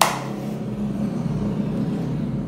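A motorcycle engine passing by, a steady low drone with engine noise throughout.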